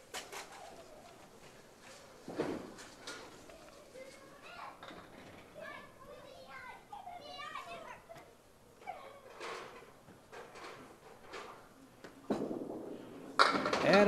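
Quiet candlepin bowling alley with faint chatter from onlookers and a few scattered knocks from the lanes. Near the end a candlepin ball rolls down the lane and crashes into the pins, a strike that knocks all ten down.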